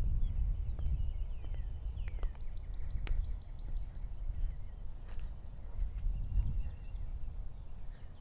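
Birds chirping, with a quick trill of evenly spaced high notes about two and a half seconds in, over a louder low rumble of wind on the microphone.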